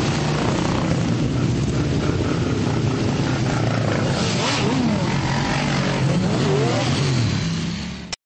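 A group of motorcycles running together, engines idling in a steady low drone, with throttles revved up and down a couple of times, about halfway through and again near the end.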